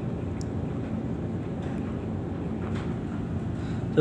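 Steady low background rumble with a faint hum, and a few faint ticks.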